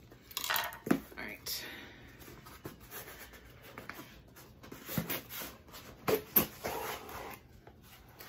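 Cardboard subscription box being opened and handled: rustling and scraping of the flaps and paper, with sharper knocks about a second in and again around five to six seconds in.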